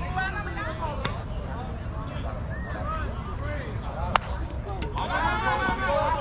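Players' voices talking and calling out across an outdoor ball field, louder again near the end, over a steady low rumble. There is one short sharp click about four seconds in.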